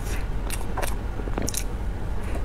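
Close-up mouth sounds of eating a soft chocolate cake: chewing with several short, sharp lip smacks and wet clicks.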